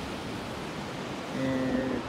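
Steady wash of ocean surf breaking on a beach, with a man's drawn-out hesitation sound "ē…" near the end.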